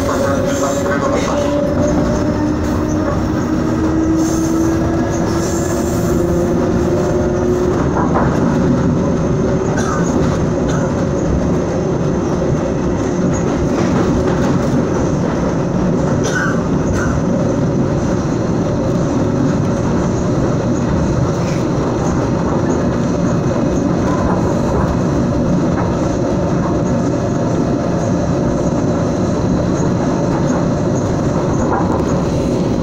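Onboard running noise of a SuperVia series-500 electric commuter train under way, a steady dense rumble. Over the first several seconds a whine rises slowly in pitch as the train picks up speed. After that a few single clacks from the wheels on the track stand out from the rumble.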